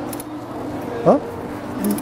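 A steady machine hum, with a short spoken "uh" about a second in.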